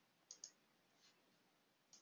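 Faint clicking at a computer over near silence: a quick pair of clicks about a third of a second in and another pair at the very end.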